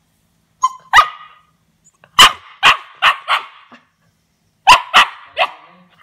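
Siberian husky puppy barking at a cut half lime on the floor: short, sharp barks in three bursts, two about a second in, four in the middle and three near the end.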